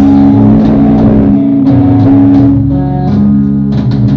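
Live heavy rock band playing: loud, sustained distorted electric guitar chords over bass guitar, the chord shifting a few times, with occasional drum and cymbal hits.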